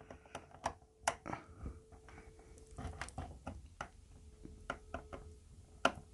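Irregular small plastic clicks, taps and scrapes of a cable plug being fumbled against the communication port of a Victron MPPT solar charge controller, the plug not yet going in. A faint steady hum runs underneath for part of the time.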